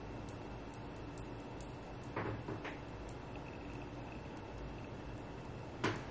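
Quiet room tone with a faint steady hiss, broken by a few soft short clicks: two about two seconds in and a sharper one near the end.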